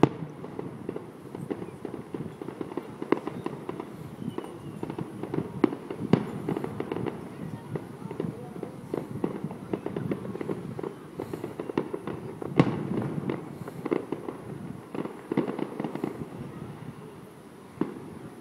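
Aerial fireworks display: a rapid, irregular string of bangs and crackles from shells bursting, with the sharpest reports about six seconds in and again about twelve and a half seconds in.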